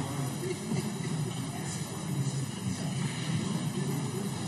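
Indistinct murmur of many voices and movement in a large parliament chamber, a steady low background hubbub with no single voice standing out.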